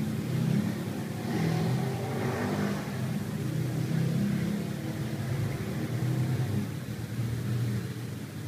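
A low, wavering motor hum that swells and eases.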